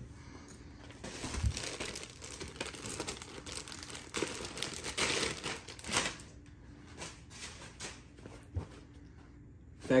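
Clear plastic packaging bag crinkling as it is handled and opened, busiest for the first several seconds and then quieter.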